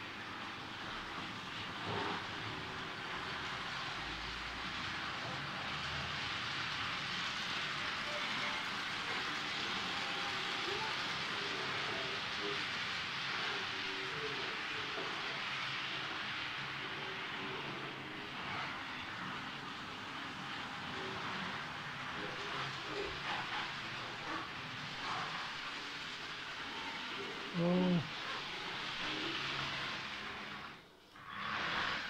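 Model train running on layout track: a steady whirring hiss of the locomotive's motor and the wheels on the rails. Near the end comes one short, loud pitched sound.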